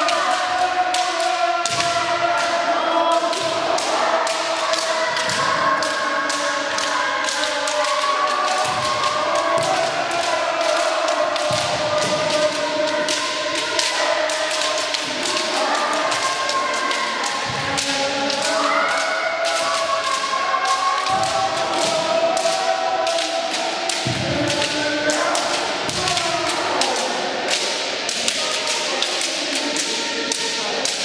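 Kendo sparring by many pairs at once: bamboo shinai clacking on each other and on armour, and bare feet stamping on a wooden floor, several impacts a second without let-up. Over them, long overlapping kiai shouts from many kendoka, reverberating in a large hall.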